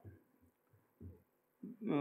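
A short pause in a man's speech over a microphone, with two faint low thumps about a second apart; he starts speaking again near the end.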